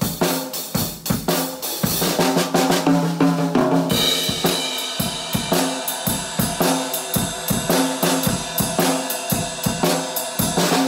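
Drum kit playing a shuffle beat: a steady swung groove of bass drum, snare and cymbal strokes. About four seconds in, the cymbals grow brighter and fuller.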